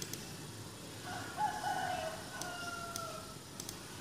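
A rooster crowing once: one long call of about two and a half seconds, starting about a second in and sinking in pitch as it trails off.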